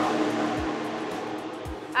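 Loud rushing mechanical noise in a Formula 1 team garage, loud enough to make a person cover her ears, fading over the two seconds. Background music with a soft beat about once a second runs underneath.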